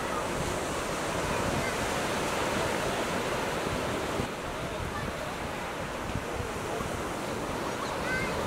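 Sea surf breaking and washing over shallow sand in a steady rush, a little quieter after about four seconds.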